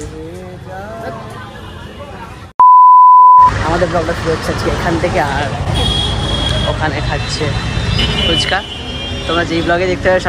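A loud, steady, high-pitched censor bleep lasting about a second cuts in sharply between talking. From about three and a half seconds in, busy street noise of traffic and many voices follows.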